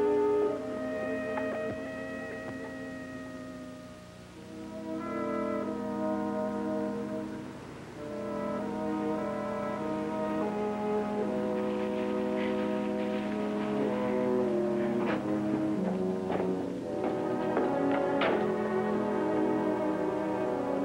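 Orchestral background score led by brass. It plays sustained chords that drop away quietly about four seconds in, then swell again, with a few sharp accented hits in the last few seconds.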